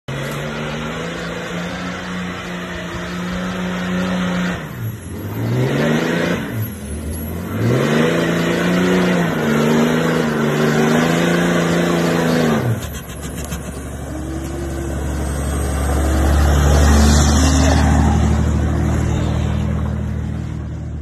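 Cummins turbo-diesel engine of a Ram pickup pulling under load while towing a camper, its tone steady at first, then dipping and climbing twice in pitch about a quarter of the way in. Later the engine tone fades into a deep rumble that grows loudest about three-quarters through as the truck and camper pass close.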